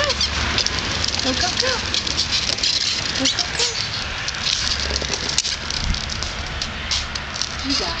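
Hard plastic wheels of a toddler's ride-on trike rolling over a concrete driveway as it is pushed: a steady gritty rumble with a stream of small clicks and crackles.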